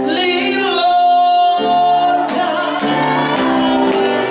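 Live gospel singing over sustained keyboard chords, with one long held high note around the middle.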